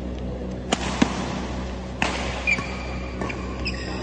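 Badminton play: sharp smacks of rackets hitting the shuttlecock, with short squeaks of shoes on the court floor, over a steady hum.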